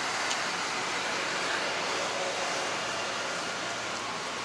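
Steady outdoor street ambience: an even hiss of road traffic on a nearby street, with no single vehicle standing out.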